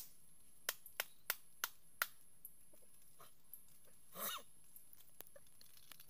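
A large knife strikes a coconut in a quick run of about six sharp knocks over the first two seconds. A brief pitched call follows a little after four seconds.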